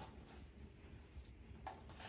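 Near silence with a faint low room hum, broken by a faint rustle of plastic shoe wrapping being pulled off a pair of heels, most noticeable near the end.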